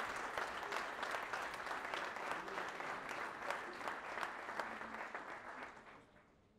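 Audience applauding: many hands clapping steadily, fading out near the end.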